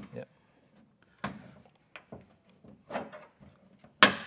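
A drop-down table being wiggled into line with its bracket on a car's rear door, giving two knocks, about a second in and near three seconds, with small clicks and rattles between.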